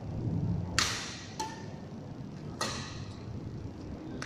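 Badminton rally: racket strings striking a feather shuttlecock, a sharp crack about a second in and another near three seconds, with a fainter hit between them, each echoing in a large hall.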